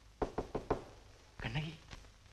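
Four quick, sharp knocks in the first half second, then a woman's brief moan.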